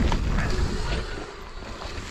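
Mountain bike rolling down a dirt trail, heard from the rider's camera: wind rushing over the microphone with tyre and frame rattle as a low rumbling noise, easing off about halfway through.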